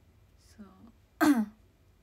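A young woman's brief wordless vocal sound: a faint breath, then about a second in one short, loud voiced sound that falls in pitch, like a throat clearing or a short 'mm'.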